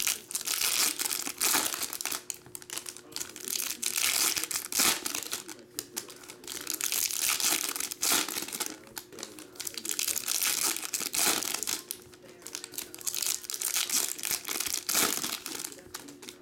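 Foil trading-card pack wrappers of 2020 Topps Finest baseball crinkling and tearing as packs are opened by hand, in bursts of rustling every few seconds.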